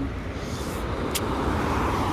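Steady low outdoor rumble with no speech, with a short high click about a second in.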